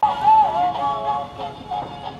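Plush giraffe toy singing a song in a high voice, its melody sliding between notes.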